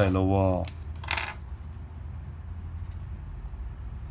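A brief plastic click and rustle about a second in, as a Stabilo highlighter is uncapped and handled over the paper, followed by a low steady hum.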